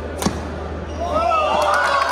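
A badminton racket smashes the shuttlecock once, a sharp crack about a quarter second in. From about a second in, high-pitched voices are shouting.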